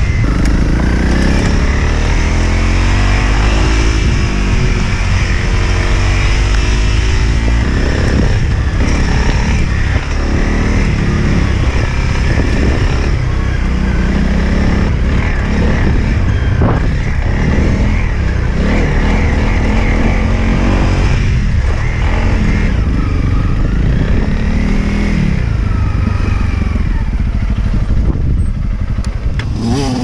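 Honda CRF dual-sport motorcycle's single-cylinder four-stroke engine being ridden, its revs rising and falling through the gears. There is heavy wind rumble on the microphone.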